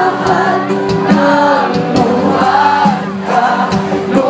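Live band music with a singer, sung melody lines held and gliding over a steady band backing, recorded from within a concert crowd.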